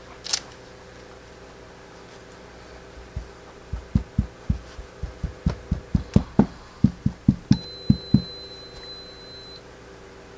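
Series of about twenty soft, short thumps at an irregular three to four a second, from a glue bottle's tip being dabbed onto fabric laid on a tabletop. One sharp click comes just before them, and a faint high steady tone sounds for about two seconds near the end.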